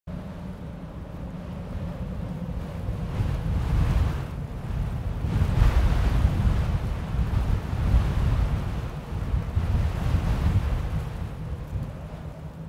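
Wind blowing across the microphone over the wash of river water, rising and falling in gusts.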